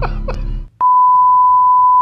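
A man laughing in rhythmic bursts over a low hum cuts off about two-thirds of a second in. After a short gap comes a single steady, pure test-pattern tone, the beep that goes with television colour bars. It is the loudest sound and holds unchanged for over a second before cutting off.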